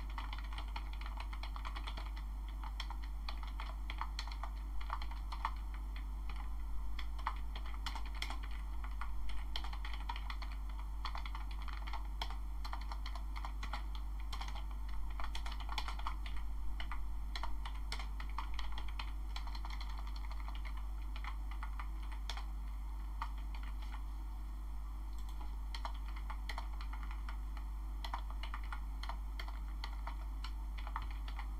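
Computer keyboard being typed on: irregular runs of key clicks with short pauses, over a steady low hum.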